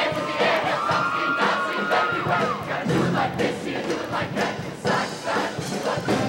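A show choir singing with band accompaniment, many voices together with shouts and a held high note in the first couple of seconds, over a steady beat.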